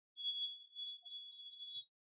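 A faint, steady high-pitched tone, held for nearly two seconds.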